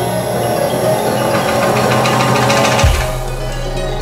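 Live instrumental band playing synthesizers and keyboards over a drum kit, with a fast ticking rhythm on top. About three seconds in, a deep bass note slides down and then holds.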